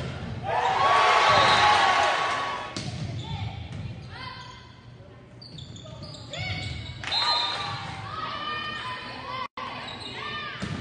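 Volleyball rally on a hardwood gym court: many short squeaks of players' shoes on the floor and the ball being hit, in an echoing hall. Crowd cheering and shouting swells loudly about half a second in and dies away after about two seconds.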